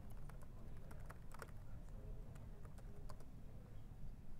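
Typing on a computer keyboard: a faint run of irregular key clicks as a terminal command is entered.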